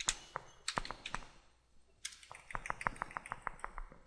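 Computer keyboard keys being typed: a few scattered keystrokes, a short pause, then a quick, even run of about a dozen key presses in the second half.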